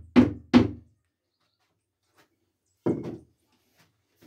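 Wooden knocks of a two-by-four offcut tapping a drip-tape connector down into its rubber seal in a PVC pipe. Two quick knocks come at the start, then one more just before three seconds in.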